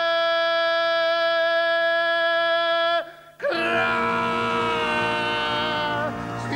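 A male singer holds one long, steady wailing note for about three seconds with almost no accompaniment, breaks off, and about half a second later starts a second long held note as the band comes back in underneath.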